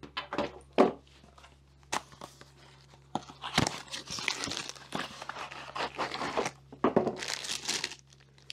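Plastic packaging crinkling and rustling in bursts as the power station's AC charging brick is unwrapped, with a sharp knock about a second in.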